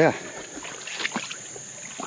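Creek water sloshing and splashing around rubber boots as someone wades, with a few soft splashes about a second in. Under it runs a steady high-pitched chorus of insects.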